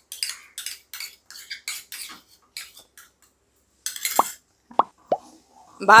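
Wooden spatula stirring and scraping thick almond halwa, with freshly added ghee, around a nonstick pan: a quick run of short scraping strokes. After a pause, a few sharp short clinks about four and five seconds in.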